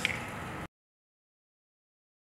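Faint room tone from the briefing hall with one short click at the start, cut off abruptly about two-thirds of a second in to complete silence.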